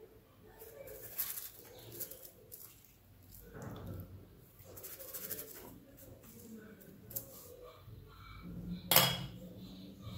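Metal fluted rectangular cookie cutter pressed through rolled dough, clicking and scraping against a granite countertop: a few light clicks spread out, then one sharp, louder clack near the end.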